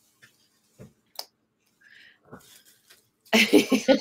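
A few faint clicks and small mouth sounds, then a woman laughs loudly in quick choppy bursts starting about three seconds in.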